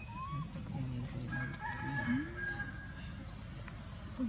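Animal calls: two short, high, rising calls about two seconds apart, with a steadier, lower call between them.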